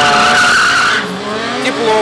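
Stunt motorcycle's tyre squealing loudly, cutting off suddenly about a second in.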